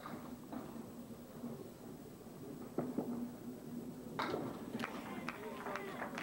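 A candlepin bowling ball rolls down a wooden lane, and about three seconds in there is a sharp clatter of pins as it knocks down all ten. Around a second later crowd voices and cheering break out.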